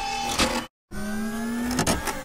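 Edited intro sound effects: a short noisy burst, a sudden cut to silence, then a machine-like whine rising slowly in pitch for about a second.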